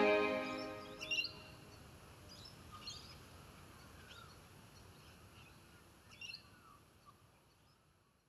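A held music chord fades out in the first second, leaving a faint ambience of scattered bird chirps over a low background hiss, which slowly fades away near the end.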